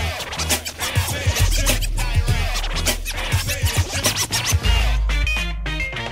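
Instrumental break of a hip hop track: DJ turntable scratching in short, quick strokes over a drum beat and deep bass. Near the end the scratching stops and held pitched notes sound over a long sustained bass note.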